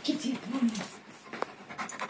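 A dog panting.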